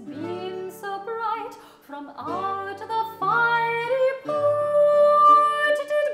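A soprano sings an English Renaissance broadside ballad, accompanied by a Renaissance consort of plucked lute and bowed viols. She sings several short phrases and then holds one long high note in the second half.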